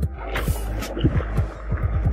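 Background music with a steady beat of deep, falling bass kicks and sharp percussion.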